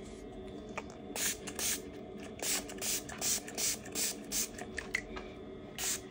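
A small finger-pump spray bottle spritzed over and over in quick short hisses, about three a second, starting about a second in, as liquid wound treatment is sprayed onto a dog's paw.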